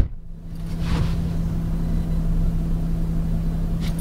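A car door thumps shut at the very start, then the Land Rover Discovery's 3.0-litre turbocharged V6 diesel idles with a steady low hum, heard from inside the closed cabin.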